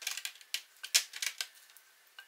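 Syrup-coated candied walnuts tipped out of a bowl, landing on a non-stick sheet over a wire cooling rack in a quick run of light clicks and taps, loudest about a second in and thinning out by about a second and a half.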